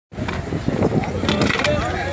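A lifted off-road Jeep's engine running with a steady low hum as it climbs onto a junk car, with people talking over it.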